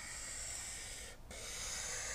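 A marker drawn across a paper sketch pad: two long strokes of the tip rubbing on the paper as the lines of a triangle are drawn, with a short break a little over a second in.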